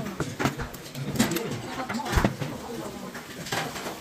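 Clinks and knocks of stainless steel bowls and utensils being handled on a restaurant table, with a heavier knock about two seconds in, amid low voices.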